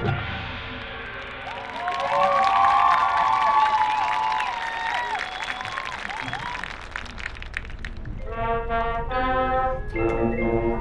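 High school marching band brass playing: a chord cuts off and rings away, then sliding pitch bends and smears weave over one another with scattered sharp clicks, and about eight seconds in the band comes in on a held full chord.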